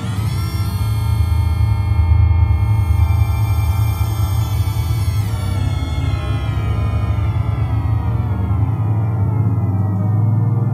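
Synthesis Technology E370 quad morphing VCO playing a sustained wavetable drone from its four oscillators in cloud mode, with the wave morphing while a knob is turned. The sound brightens sharply in the first second and slowly darkens again from about halfway through.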